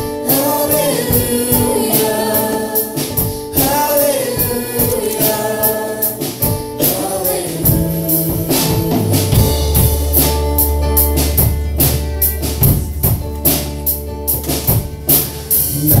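Live worship band playing a song: violin and acoustic guitar with singing over a steady percussion beat, and a sustained low bass note coming in about halfway through.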